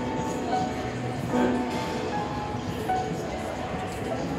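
Upright piano being played by hand: a chord struck about a second and a half in, with single notes picked out around it.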